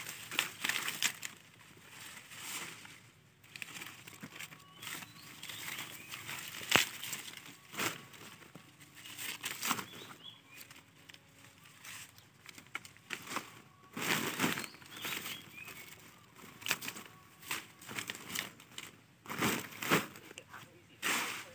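Leafy branches rustling and a plastic sack crinkling as fruit clusters are stripped off by hand and dropped into the sack, in irregular bursts, with one sharp snap about a third of the way through.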